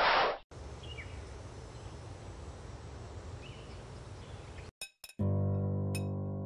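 A short, loud burst of noise at the very start, followed by a steady hiss of background ambience with a couple of faint chirps. Near the end come a few sharp clicks, then background music with sustained low notes begins, with an occasional ringing clink over it.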